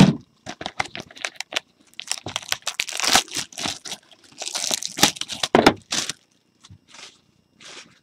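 Plastic shrink wrap being torn and crumpled off a sealed box of trading cards: a dense run of crinkling and crackling, busiest between about two and six seconds in, then thinning out.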